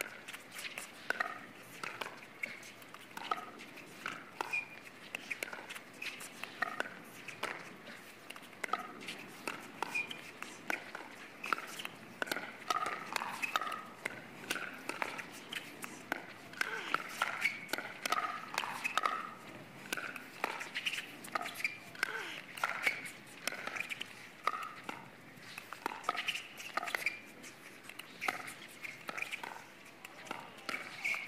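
A long pickleball rally: paddles striking the hard plastic ball in a quick, irregular run of pops, with players' footwork on the court between hits.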